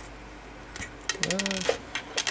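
Small plastic parts of a Gunpla model kit clicking as a hand and beam saber are worked loose, a quick run of clicks starting about a second in.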